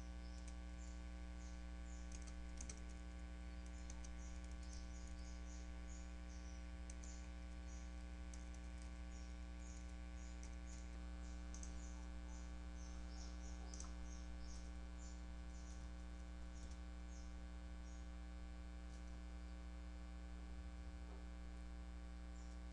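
Computer keyboard typing, quick, faint and irregular keystroke clicks, over a steady low electrical hum.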